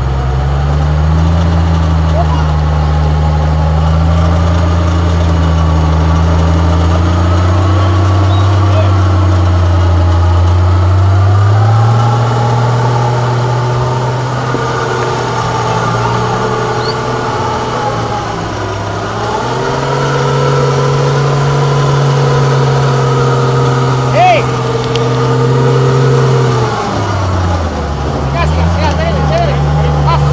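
1964 Unimog's turbo-diesel engine working hard under load on a steep climb. The revs rise about twelve seconds in, dip and climb again, then fall away near the end. A brief high-pitched sound comes late on.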